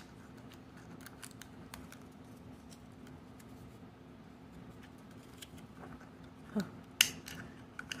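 Faint crinkling and small clicks of a miniature toy's paper and plastic packaging being handled, with one sharp click about seven seconds in.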